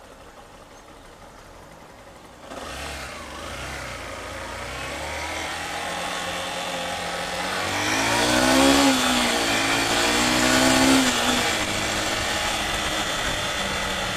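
Motorcycle engine ticking over at a stop, then pulling away about two and a half seconds in and accelerating, its pitch rising and dropping a few times as it goes up through the gears. Wind rushing over the microphone grows as the bike picks up speed.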